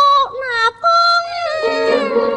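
Cantonese opera singing: a high voice, most likely a woman's, holds and slides through a drawn-out line. It breaks off briefly about a third of the way in, then goes on over held notes of instrumental accompaniment.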